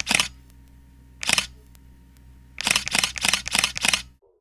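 Camera shutter clicks of a single-lens reflex camera: one click at the start, another about a second later, then a rapid burst of about five in quick succession like continuous shooting. A faint steady low hum lies underneath.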